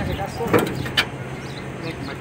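Two sharp knocks about half a second apart, with voices in the background.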